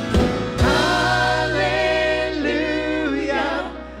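Worship song sung by several voices together over a band. Drum hits in the first half-second give way to long held sung notes over a steady bass, and the voices fall away just before the next phrase begins near the end.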